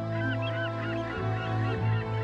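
Bagpipe music: a steady drone under a quick, ornamented chanter melody.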